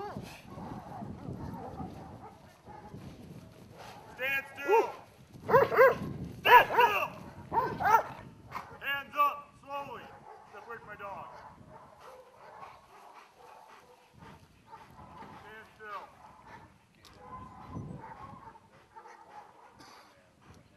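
Police service dog barking, about ten short loud barks that come mostly in quick pairs over several seconds, then fainter sounds.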